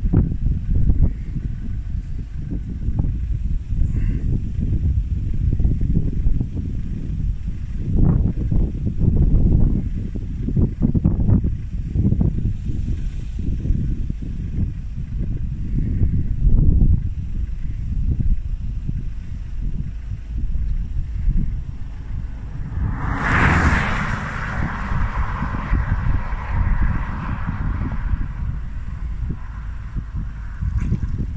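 Wind buffeting the microphone, a heavy low rumble throughout. About three-quarters of the way through, a louder rushing hiss swells suddenly and fades away over several seconds.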